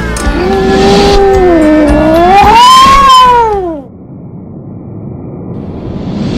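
A long wailing tone that dips, rises and falls again in pitch, then cuts off suddenly, followed by a low rumble building up near the end.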